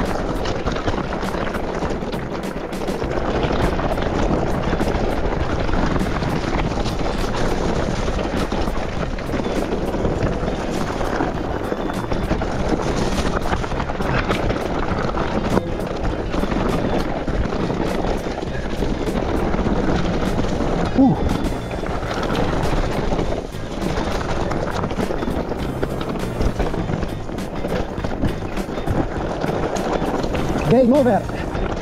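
Mountain-bike trail noise from a Raymon Trailray e-MTB rolling fast downhill over rough dirt and stones: steady tyre rumble, frame and drivetrain rattle, a run of small clicks and knocks, and wind on the helmet-camera microphone. A sharper knock stands out about twenty seconds in.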